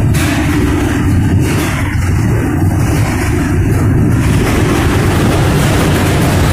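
Steady, loud rumble of a moving freight boxcar heard from inside by its open door, the car riding rough over track that the rider calls bad rails.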